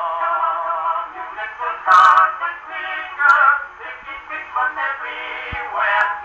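Edison Diamond Disc record playing through the brass horn of a Victor III gramophone: music from an early acoustic recording, thin, with almost no treble.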